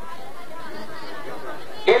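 Background chatter of many voices from an audience. Near the end a man's voice comes in loudly over a microphone.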